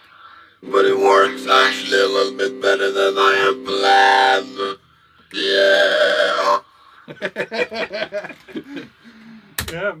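Talkbox fed by a sawtooth-wave synth patch: held synth notes shaped into vowel-like talking sounds by the player's mouth for about four seconds, then a second shorter phrase. Laughter follows near the end.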